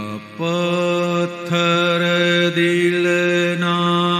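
Slow devotional singing of a Gujarati bhakti pad, the voice holding long, steady notes in phrases of about a second each.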